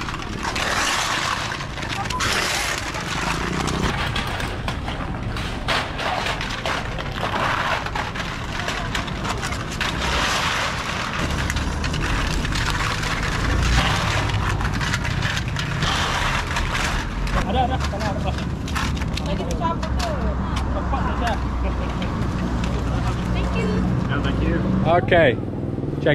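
Crushed aluminium cans clattering and scraping on asphalt as they are gathered up by hand and pushed along with a stick: many small irregular clicks and rattles. Steady traffic rumble and voices underneath.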